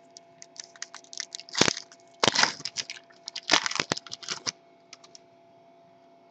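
A baseball card pack's wrapper being torn open and crinkled by hand. It makes a run of sharp crackles, with three louder bursts in the middle, and stops about five seconds in.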